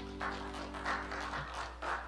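Soft electronic percussion rhythm from a Yamaha Motif XF8 workstation keyboard: shaker-like hits, about three a second, playing quietly under the last of a held note that fades out.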